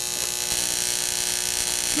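High-voltage arc from a 12,000-volt, 24-milliamp neon sign transformer burning steadily across a spark gap: a constant electric buzz and hiss with a mains hum under it.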